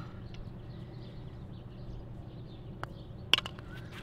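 Quiet outdoor ambience: a steady low hum with faint bird chirps, and one sharp click a little past three seconds in.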